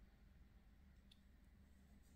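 Near silence: faint room tone with a low hum, and one faint click about a second in.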